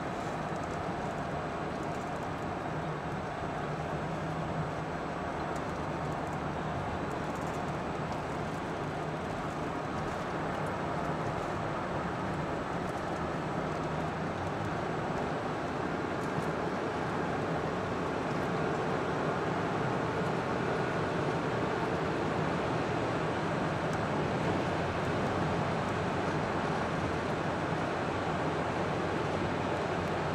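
Steady road and engine noise of a moving car heard from inside the cabin, getting slightly louder in the second half.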